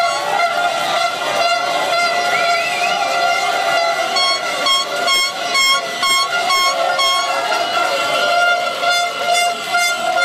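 Horns honking over a noisy celebrating crowd of football fans. From about four seconds in, a horn sounds in quick repeated blasts, about three a second, for a few seconds.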